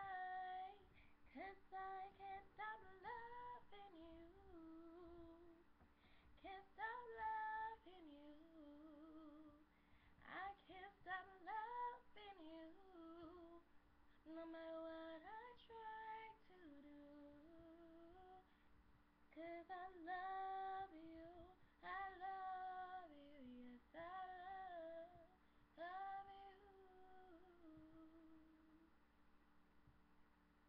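A woman singing a cappella, with no accompaniment: melodic phrases of a few seconds, the notes bending and sliding, with short pauses for breath between them.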